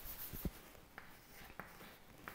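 Chalk writing on a chalkboard: a few faint, short taps and scrapes as characters are written, the firmest near the half-second mark.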